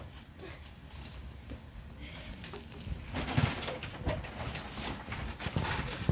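Rustling and crinkling handling noise with a few dull knocks, louder in the second half, as people move about and handle things such as cabbage leaves and a plastic bag.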